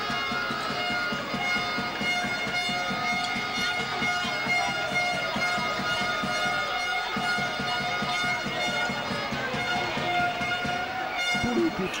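Basketball arena during live play: music playing over a steady mix of crowd voices.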